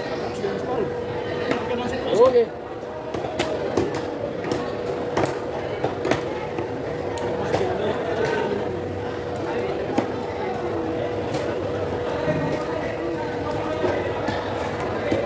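Market hubbub of overlapping voices, with short sharp knife clicks and taps as a large knife cuts through a tuna on a wooden chopping block. A steady hum runs under it all.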